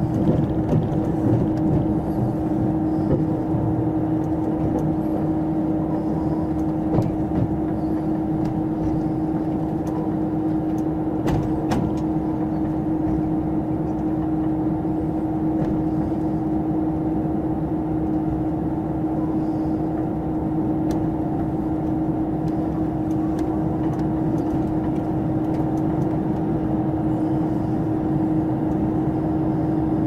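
Cabin noise inside a KiHa 281 series diesel express railcar rolling into a station: a steady rumble with a constant hum. Two brief sharp clicks come about a third of the way in.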